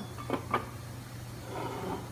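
Two short clunks about half a second in, of a Keene P1500 pump's aluminium housing being set onto and handled on its pedestal, over a steady low hum.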